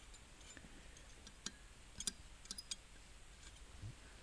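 A few faint, irregularly spaced clicks of a brass pick catching against a stuck spool valve and its bore in an automatic transmission valve body.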